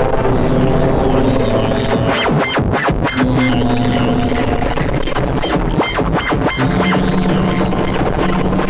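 Electronic music: held synthesizer chords that change every few seconds over a low, steady pulse, with noisy swishes and a thin high whistle that comes in about a second and a half in.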